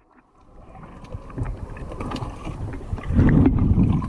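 Underwater rushing and rumbling of water moving past the camera as a spearfisher swims after a shot fish, with faint ticks. It builds over the first second and is loudest near the end.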